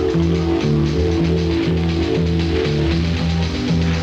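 Instrumental music with a steady beat and a repeating bass line, as heard off an AM radio broadcast.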